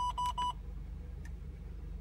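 Radenso RC M radar detector controller sounding its laser alert: rapid short beeps at one pitch, about six a second, that cut off about half a second in. It signals that the paired AntiLaser Priority has detected laser from the front; afterwards only a faint low hum remains.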